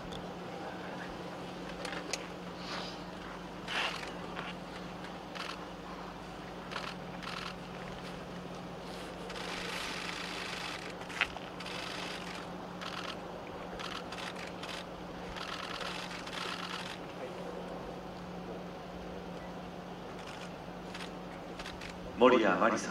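Open-air crowd ambience at a low level: a steady low hum with scattered faint clicks and rustles and some faint murmuring, while the audience waits between performances.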